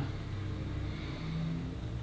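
A low, steady hum in a pause between speech.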